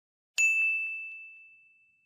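A single bright, bell-like ding sound effect, struck once and ringing out, fading away over about a second and a half.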